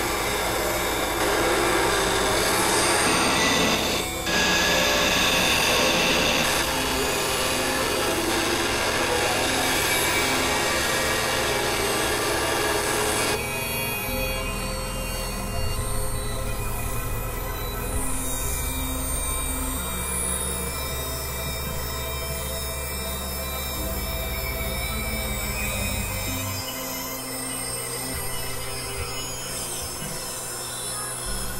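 Experimental electronic noise music: a harsh, grinding synthesizer texture over sustained low drone notes that shift in steps. About 13 seconds in the dense high noise drops away abruptly, leaving thinner drones with slow gliding high tones.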